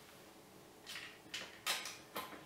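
Quiet, then three short scraping, rustling handling noises from about a second in, the last the loudest, as the KitchenAid stand mixer's fittings are handled by hand; the motor is not yet running.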